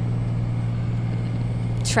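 Steady road and engine noise inside a moving car's cabin: a constant low hum with an even hiss over it. A woman's voice starts right at the end.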